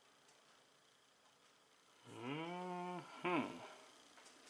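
A man's wordless hum, an appreciative "mmm", held for about a second from about two seconds in, followed by a shorter falling note. Before it there is only faint room tone.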